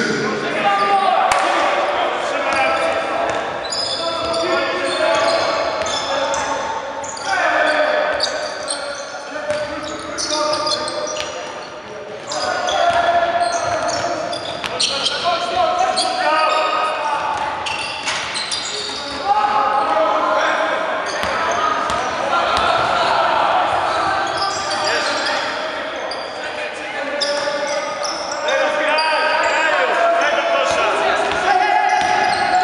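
Basketball being dribbled and bounced on a hardwood gym floor during play, short knocks echoing in a large sports hall, with voices calling out throughout.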